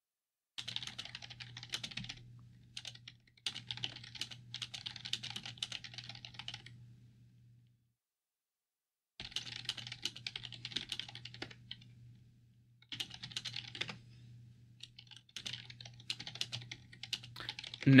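Typing on a computer keyboard: five bursts of rapid key clicks separated by short silences, with a low steady hum under each burst.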